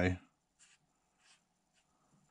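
A few faint, brief scratchy rustles of hands handling a balsa-and-tissue model aeroplane on a workbench.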